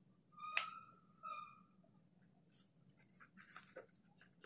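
Faint ballpoint pen strokes scratching on notebook paper in the second half, a quick run of small ticks. Two short high squeaks come earlier, about half a second and a second and a half in.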